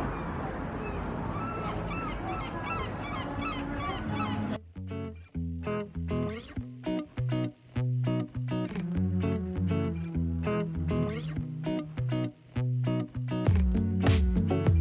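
Gulls calling repeatedly over outdoor harbour ambience, cut off abruptly about four and a half seconds in by background music with a steady rhythm and bass line.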